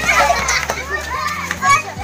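Several children's voices shouting and chattering at play, overlapping, with one louder shout near the end.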